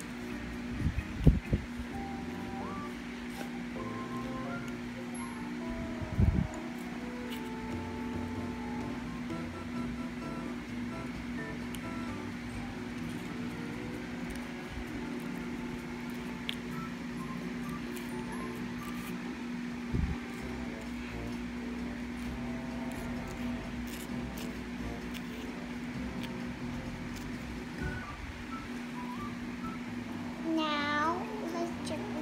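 Quiet background music with a steady low hum underneath. There are a few short low thumps, about a second in, about six seconds in, and again about twenty seconds in.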